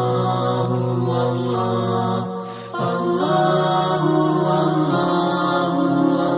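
Background music: a vocal chant held on long, steady notes, with a short break about two and a half seconds in.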